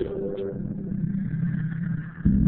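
Lo-fi hip-hop instrumental playing with a muffled, low-passed sound and a heavy bass.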